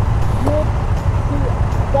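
KTM 890 Adventure's parallel-twin engine idling at a standstill: a steady low rumble, with brief words spoken over it.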